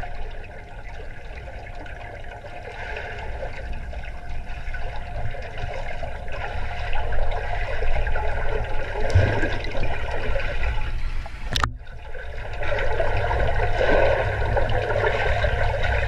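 Swimming-pool water heard underwater: a steady, muffled rushing and gurgling that grows louder after the first couple of seconds, with a brief dropout about twelve seconds in.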